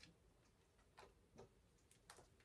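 Near silence with about four faint clicks of tarot cards being handled, as a card is taken from the deck.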